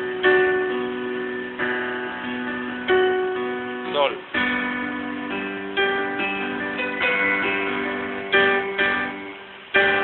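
Electronic keyboard playing sustained chords with both hands, a B minor chord giving way to G about four seconds in. Each chord is struck anew every second or so and fades between strikes.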